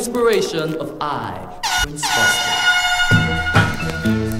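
A man's voice speaks briefly, then a sound-system air horn effect blares as one steady, many-toned blast of about a second and a half. Near the end a ska or early reggae backing rhythm with bass comes in.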